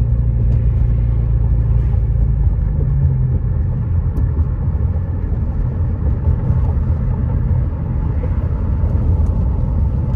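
Steady low rumble of a car driving on a paved road, heard from inside the cabin: engine and tyre noise.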